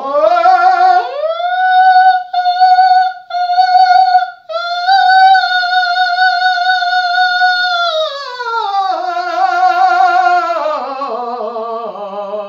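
A tenor sings an exercise on a high F sharp above high C. He slides up an octave to the F sharp about a second in, sounds it as three short notes, holds it for about three and a half seconds, then comes down in steps with a wavering vibrato.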